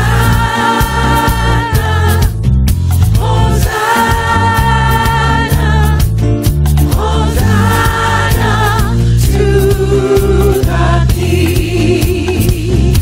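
Gospel music with choir voices holding long notes, about two seconds each, over a steady bass line and beat. A single voice with a wavering vibrato comes forward near the end.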